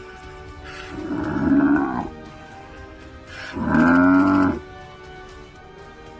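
Two loud, drawn-out animal calls, each about a second long, a couple of seconds apart, from a lion pride's attack on a Cape buffalo, over steady background music.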